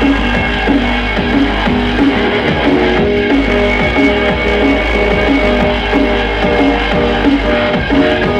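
Loud drum and bass music from a DJ set over an arena sound system, with a repeating riff over heavy bass.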